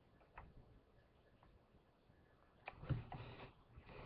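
Near silence, with a few faint clicks from the toy helicopter's remote controller being handled, and a short soft rustle about three seconds in.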